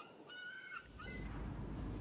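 Several short, clear bird calls in quick succession, then a low rumble comes in about halfway.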